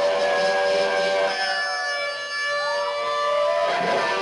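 Electric guitar feedback: several overlapping notes held without strumming, slowly bending down and up in pitch like a siren, with a dip about two seconds in and then a rising swoop.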